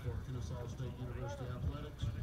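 Indistinct voices of people talking at the ballpark, over a steady low rumble.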